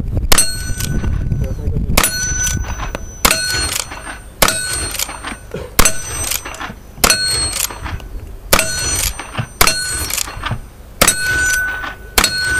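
Rifle fired in steady succession, about nine shots roughly every second and a half, each followed by the brief ring of a steel target plate being hit.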